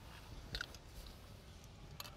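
Quiet outdoor background with one faint short tick about half a second in.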